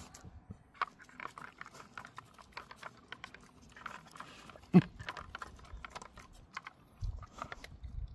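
Dog licking and nosing kibble out of a layered hamburger-shaped treat puzzle toy: scattered light clicks and rattles of the toy's layers and kibble, with mouth and licking sounds, and one louder short knock about five seconds in.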